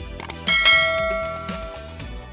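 A bell-chime sound effect from an animated subscribe-and-notification-bell end screen rings once about half a second in and fades away over a second and a half, just after a couple of mouse-click sounds, over background music with a steady beat.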